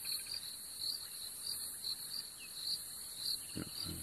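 Night insects in the bush: a steady high shrill, with a cricket chirping about twice a second. A quieter falling trill fades out shortly after the start.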